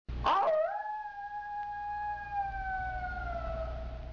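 A single long howl: it rises sharply at the start, then holds and slowly sinks in pitch as it fades, over a low hum.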